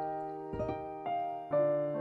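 Background music: slow, gentle piano, single notes struck about every half second and left to ring, with a lower note joining about one and a half seconds in.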